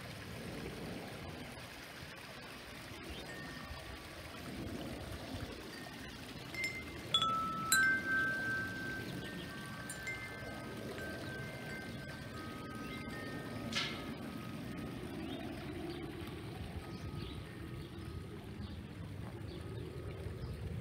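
Tubular metal wind chimes ringing, with a few clear strikes about a third of the way in and one more about two-thirds through, their tones hanging on between strikes. Underneath is the steady splashing of a small waterfall into a pond.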